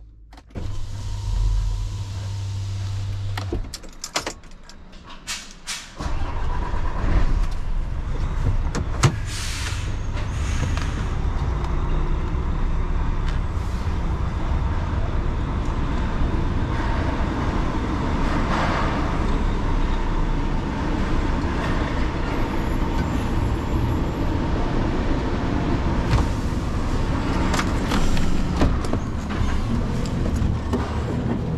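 A DAF truck's diesel engine running steadily, heard from inside the cab as the truck moves slowly through a yard. A few sharp clicks and knocks come in a quieter spell about four to six seconds in.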